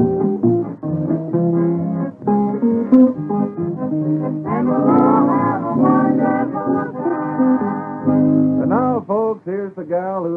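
Country string-band music led by picked guitar, with held wavering notes in the middle, from an old radio transcription disc; a man's voice starts talking over it near the end.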